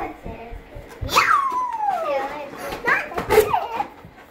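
Young children squealing and chattering while playing with balloons: a long high squeal that slides down in pitch starts about a second in, and a shorter high cry follows near the end, among a few light knocks.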